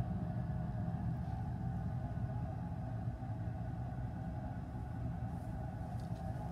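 Steady low rumble and hum of room background noise, with a few faint steady tones and no clear separate event.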